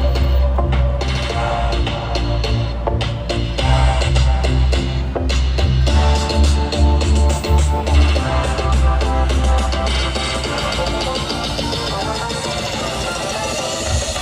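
Music with a heavy, pulsing bass and drums; the bass thins out in the last few seconds.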